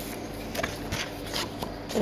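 Sheets of paper being handled and swapped by hand, with a few soft, short rustles.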